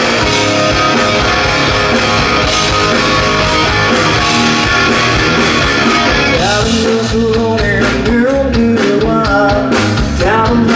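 A live rock band playing loudly, with guitars and a drum kit. The lead singer's voice comes in about two-thirds of the way through.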